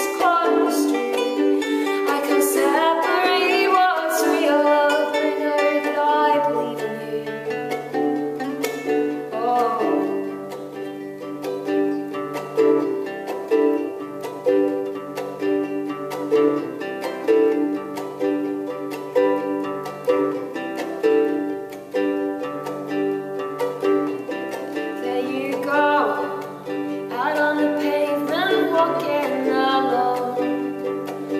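Ukulele and acoustic guitar strumming a gentle indie-pop song, with a woman singing over them. The voice drops out about a third of the way in for an instrumental stretch of steady chords and a low guitar bass line, and the singing returns near the end.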